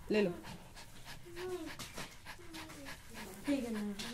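A pet dog panting in quick breaths close to the microphone, after a brief spoken word at the start.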